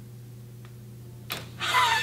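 Quiet room tone with a faint steady hum during a pause in speech. A short sharp sound about a second in is followed by a woman's voice starting again near the end.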